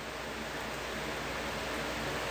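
Steady background hiss of the recording with a faint low hum underneath, and no other sound.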